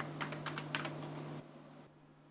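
Typing on a word processor keyboard: a brisk, light run of keystrokes that stops about one and a half seconds in.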